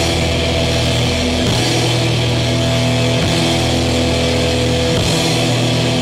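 Thrash metal band playing live: distorted electric guitar and bass hold ringing chords that change about every second and a half, with a heavy low end.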